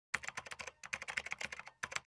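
Computer-keyboard typing sound effect: a fast run of key clicks, roughly ten a second with a couple of brief pauses, cutting off abruptly.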